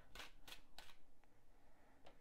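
Tarot deck being handled, the deck split and a card pulled from it, heard as three soft, quick flicks of card stock in the first second and a faint tick after.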